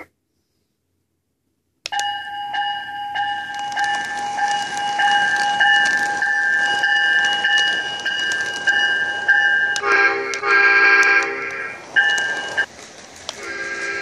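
Electronic sound effects from a Lionel LionChief O-scale Metro-North M7 model train: after about two seconds of silence, a high ringing tone repeats evenly for about eight seconds, then a multi-tone horn blasts about ten seconds in, the ringing comes back briefly, and the horn sounds again near the end.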